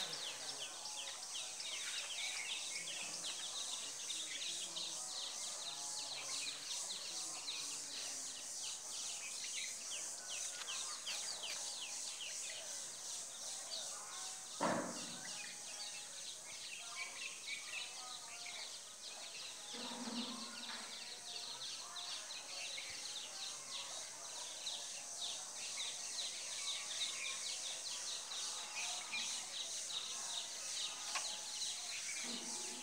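Outdoor ambience filled with a constant, dense high-pitched chirping. One sharp knock comes about halfway through, and a short shout of "ay, ay" about two-thirds in.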